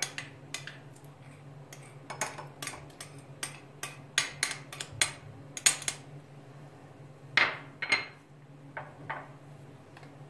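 A metal spoon clinking and scraping against small glass dishes while grated garlic is scooped into a glass of lemon juice: irregular sharp clinks, several a second at times, with short pauses between.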